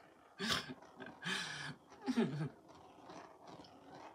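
A woman laughing in three short, breathy bursts with a wavering pitch.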